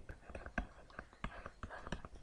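Stylus tapping and scratching on a tablet screen while handwriting, a run of irregular light clicks, with faint whispered muttering.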